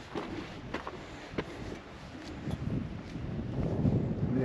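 Wind buffeting the microphone as a rough, uneven low rumble, with a few scattered light clicks.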